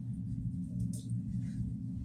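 A steady low hum in the room, with faint soft rubbing of fingertips on skin as a face scrub is worked in, about a second in and again near the end.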